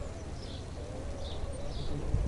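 Faint bird chirps repeating about twice a second over a low steady outdoor rumble, with a faint wavering hum underneath.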